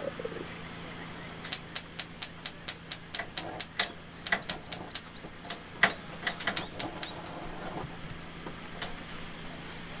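Gas cooktop burner's spark igniter clicking rapidly, about four clicks a second, in two runs with a short pause about five seconds in, as the burner is being lit.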